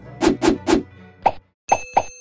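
News channel's outro logo sting: three quick percussive pops about a quarter second apart, a fourth half a second later, a moment of dead silence, then two more hits that leave a ringing chime.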